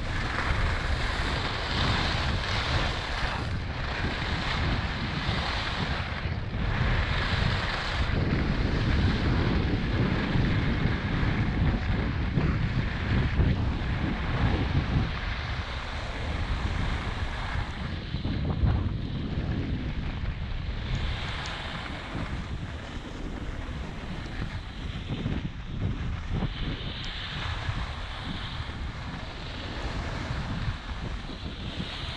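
Wind rushing over an action camera's microphone during a downhill ski run, with the hiss of skis scraping across packed snow that swells and fades with each turn.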